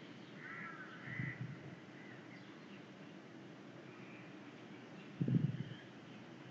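Faint bird calls in the background, with two short low bumps, one about a second in and a louder one near the end.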